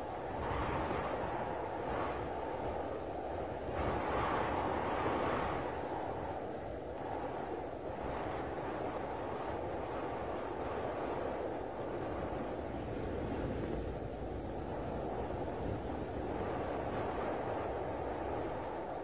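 Wind blowing steadily as a flying sound effect, swelling slightly about four seconds in.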